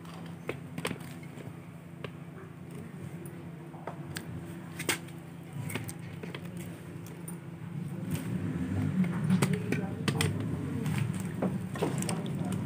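A wooden spoon stirring boiled chickpeas in an aluminium pressure cooker pot, with scattered light knocks and scrapes against the pot. A steady low hum runs underneath and grows louder in the second half.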